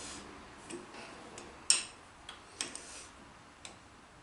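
Light metallic clicks and clinks, several at irregular intervals with the sharpest about a second and a half in: a chuck key being fitted and turned in a lathe's three-jaw chuck to nip the jaws up lightly.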